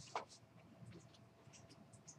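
Near silence: quiet room tone with faint scattered small clicks and a brief louder scratch about a quarter second in.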